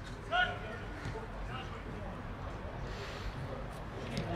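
A man's short shout about half a second in, then faint scattered voices of footballers calling on the pitch over steady open-air background noise.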